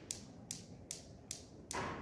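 Two steel balls of a Newton's cradle clicking as they collide, sharp evenly spaced clicks at about two and a half a second. Each click is a collision between the two equal balls, in which the moving ball stops and the resting one swings out.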